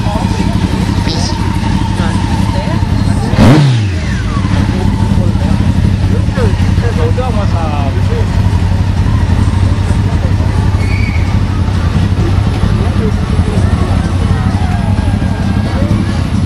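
Motorcycle engines running steadily with people talking over them; about three and a half seconds in, one engine gives a short loud rev whose pitch falls quickly away.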